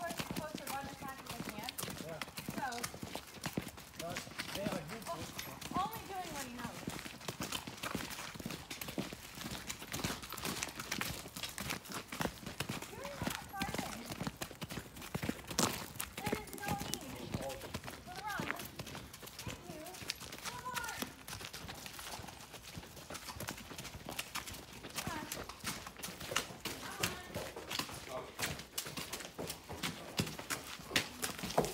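Horses' hooves clopping in a steady walking rhythm as they are led on lead ropes along a paved lane.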